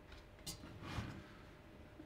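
A faint single click about half a second in as a small front-panel cable connector is pushed onto the switch's circuit board, followed by light handling noise.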